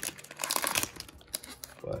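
Plastic cellophane wrapper of a trading-card cello pack crinkling and tearing as it is ripped open by hand, in irregular crackles.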